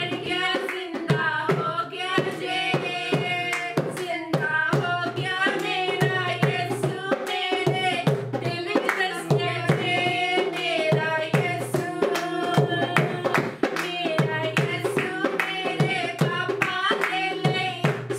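Two women singing a Punjabi worship song, with hand claps and percussion keeping a steady rhythm under the voices.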